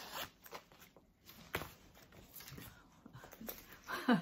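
Faint handling sounds of a nylon mesh shoulder pouch: fabric rustling and its zipper and strap being worked, with a few light clicks, the sharpest about one and a half seconds in.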